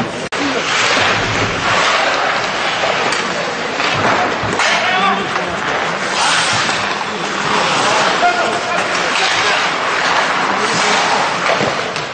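Ice hockey rink sound during a scrimmage: skates scraping and carving the ice, with players' voices calling out and a few knocks of sticks or puck.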